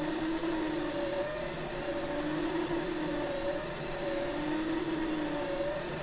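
Monoprice Mini Delta delta 3D printer printing, its stepper motors whining in two steady tones that waver slightly in pitch as the arms move the print head; a noisy little bugger.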